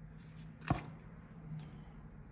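Quiet handling noise of small craft pieces on a work table, with one sharp click about two-thirds of a second in, over a faint low hum.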